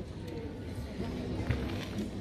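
Quiet city-street ambience with a low rumble, and faint music held in the background.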